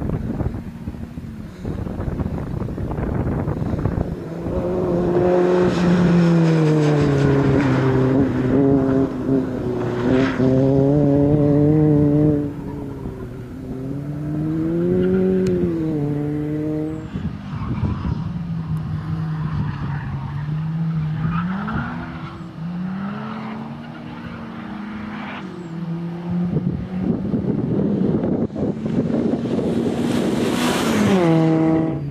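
Peugeot 106 XSi's four-cylinder petrol engine driven hard, the revs climbing and falling again and again as it works through a course of tight turns. Near the end the car comes past close by, louder, with a rush of noise.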